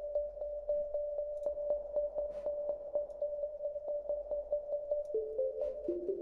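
Massive soft synth playing a sine-wave pluck pad through chorus and heavy reverb: one high note repeated in quick, even plucks, about four a second, with a lower note joining about five seconds in.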